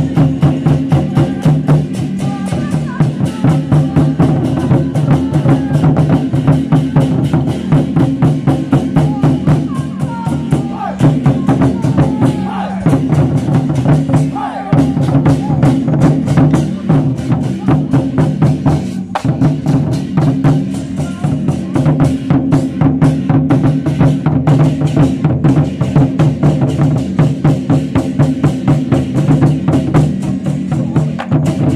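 A Chinese war-drum troupe beating several large barrel drums in a fast, steady, unbroken rhythm, with hand cymbals clashing along with the drums.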